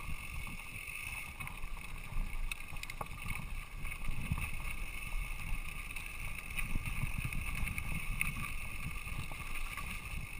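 Wind rushing over the camera microphone and a low rumble of mountain bike tyres rolling over a dirt singletrack, with scattered clicks and rattles from the bike over bumps.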